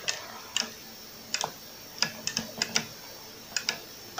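Arcade joystick and push-button microswitches on a homemade wooden controller clicking as they are pressed and released with one finger, about ten sharp clicks at an uneven pace, several in quick pairs.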